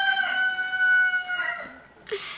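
A rooster crowing: one long, drawn-out crow that fades out near the end.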